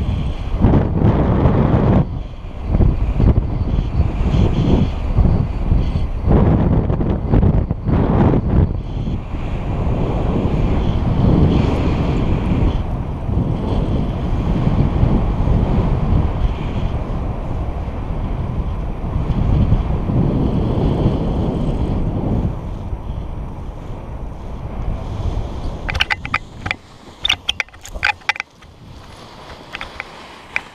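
Loud wind buffeting the camera microphone as a paraglider flies low over the ground. About 26 s in the wind noise drops away as the pilot lands, followed by a quick series of sharp clicks and rustles.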